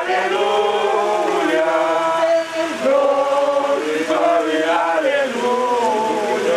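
A group of voices singing a slow song, with several melodic lines holding long notes and gliding between them.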